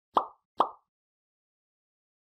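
Two short pop sound effects from an animated end screen, about half a second apart, both within the first second.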